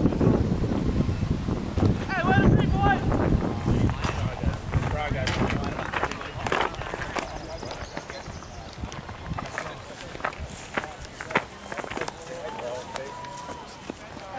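Voices calling out across a baseball field, with wind rumbling on the microphone during the first few seconds. Scattered sharp clicks follow, and the sound grows quieter toward the end.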